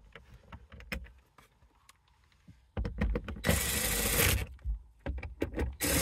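Light clicks of parts and screws being handled, then a cordless power driver running in two bursts, driving the two 7 mm screws that hold a dashboard bracket.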